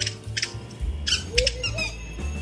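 A few short, high chirping squawks over an uneven low rumble, with a couple of brief rustling bursts.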